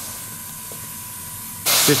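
Gravity-feed airbrush spraying: a sudden burst of hissing air starts near the end, after a stretch of faint, steady background.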